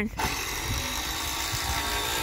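A steady, high mechanical whir for about two seconds, starting and stopping abruptly, like a small power tool run at a steady speed.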